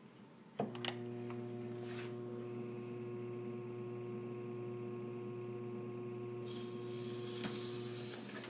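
Click about half a second in as the electric turntable motor of a 1926 Victor VE8-30 Credenza Victrola starts, then a steady mains hum. Near the end the needle meets the 78 rpm record and surface hiss joins the hum.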